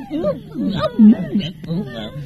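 Wordless human vocal sounds: short pitched groans and cries, the loudest about a second in.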